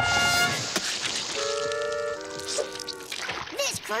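Cartoon soundtrack: a loud rushing sound effect over a music chord fades away within the first second. Then a short phrase of held, steady music notes plays for about two seconds, and a cartoon voice speaks near the end.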